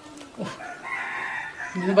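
A rooster crows once, a single drawn-out call lasting about a second.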